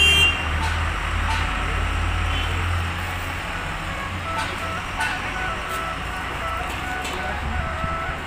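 A motor vehicle's engine rumbling close by on the street, easing off after about three seconds, with a short horn toot at the very start. A thin electronic tune of stepping notes plays faintly from about halfway through.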